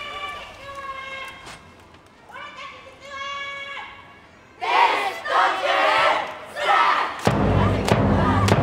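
Japanese school cheering-squad members shouting drawn-out calls, then a louder shout from several voices together about five seconds in. Near the end, music with steady low notes starts up.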